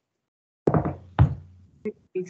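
Two dull knocks about half a second apart, each dying away briefly, then a lighter click near the end, picked up through a video-call microphone as it is handled.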